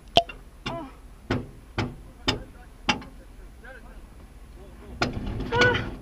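A motorhome being driven off a jack, with a run of sharp clunks about twice a second for the first three seconds, then two more clunks about five seconds in. A short bit of voice comes just after the last clunks.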